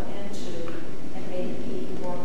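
Speech: a person talking at a meeting.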